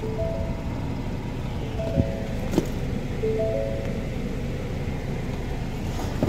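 Ford Fusion engine idling just after start, with the car's two-tone warning chime repeating about every one and a half seconds and a couple of light clicks.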